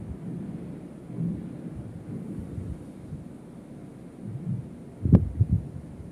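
Low, steady rumbling background noise with no speech, broken about five seconds in by one sharp tap and a few soft knocks.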